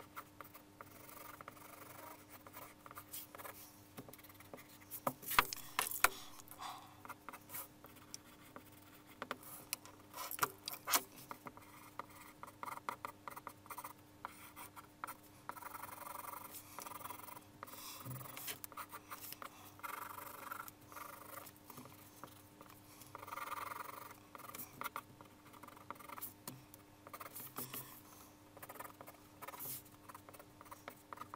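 Graphite pencil sketching on paper: quick, irregular scratchy strokes, with several longer rubbing passes where areas are shaded and a few sharp clicks.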